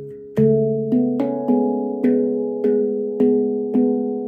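Stainless-steel MASH handpan in C# Annaziska 9 tuning played with the hands: a strong strike of the low centre note about half a second in, then tone fields struck at an even pace of about two notes a second, each note ringing on and overlapping the next.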